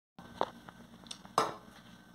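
Two short knocks about a second apart, the second louder, from a ladle against a metal cooking pot, over quiet room sound.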